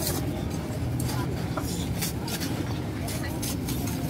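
Busy outdoor night-market ambience: indistinct chatter of many people over a steady low rumble, with a few short clicks and clinks.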